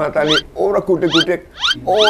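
A fast run of short, high, upward-sliding chirps, about three a second, over people talking.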